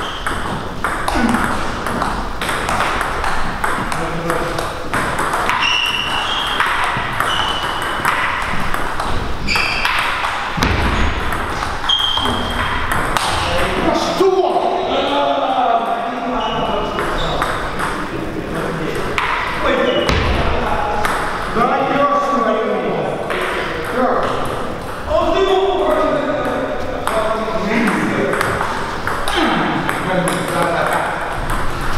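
Table tennis ball clicking off rubber paddles and the table in repeated rallies, with irregular gaps between points.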